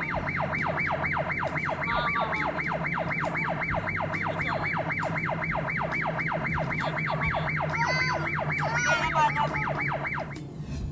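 Electronic siren-like yelp, a tone sweeping up and down about three to four times a second without a break, over the steady low hum of a moving vehicle.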